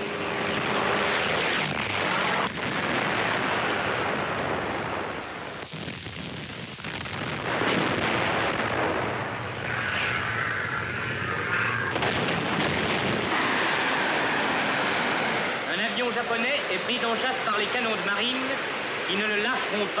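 Dense, noisy roar of aircraft engines from a 1940s newsreel soundtrack, with a man's voice coming in over it near the end.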